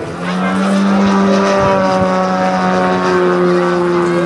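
3W two-stroke petrol engine of a large-scale RC Pitts Special biplane running at high power in flight: a loud, steady buzzing note that comes up just after the start and holds, sagging slightly in pitch toward the end.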